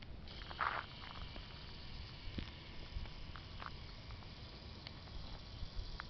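Faint outdoor background noise: a low rumble with a faint steady high hiss. A short rustle comes about half a second in, and a few small ticks follow.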